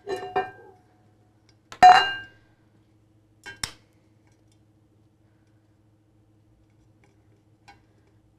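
Metal sublimation tumbler being handled: a few light clinks, one louder ringing clink about two seconds in, and a short click a little later. After that only a faint low hum remains.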